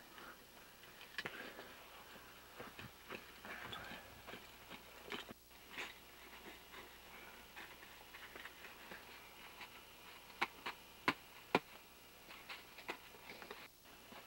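Faint, scattered clicks and scuffs of climbing hardware and snow being handled at a crevasse lip, with three sharper clicks about half a second apart near the end.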